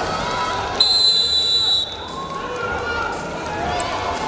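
A referee's whistle blown once, a steady high blast lasting about a second, starting about a second in and cutting off sharply, over the noise of the arena crowd.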